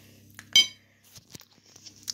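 Metal spoon clinking against a ceramic plate: one sharp, ringing clink about half a second in, then a couple of faint taps.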